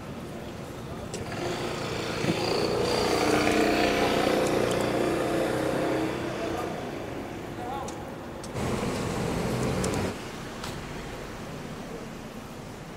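City street noise. A motor vehicle passes, rising over a couple of seconds and fading again, with passers-by's voices in the background. Near the end a second short burst of noise starts and stops abruptly.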